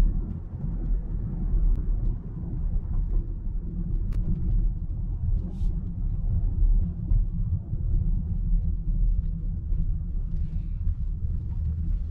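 Road and tyre rumble inside the closed cabin of a Fisker Ocean electric SUV driving at low speed, with no engine sound: a steady low rumble.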